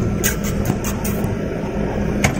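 A van's engine running, heard from inside the cabin as a steady low rumble. A quick run of light clicks sounds in the first second or so.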